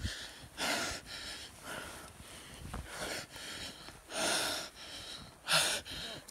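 A person breathing hard after running, with loud, noisy breaths about once a second.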